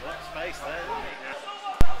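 Faint match sound with weak, distant shouting, then one sharp thump near the end.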